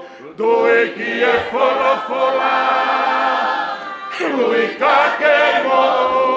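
A congregation singing a hymn together in held, drawn-out notes, with a short pause for breath right at the start and another about four seconds in.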